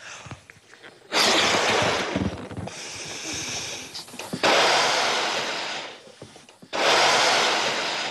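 Someone blowing hard into a latex balloon to inflate it: three long, forceful exhalations of a second and a half or more each, with short pauses for breath between.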